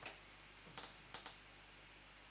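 Near silence with room hiss and three faint, short clicks about a second in.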